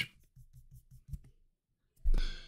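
Near silence with a few faint low bumps in the first second or so, the strongest a little after one second, then dead silence.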